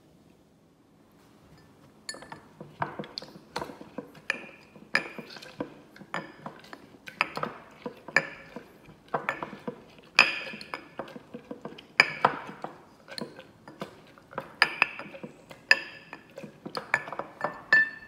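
Wooden muddler crushing lemon, mint and raspberries in a glass cocktail mixing glass, knocking against the glass about twice a second with a ringing clink. The strikes begin about two seconds in.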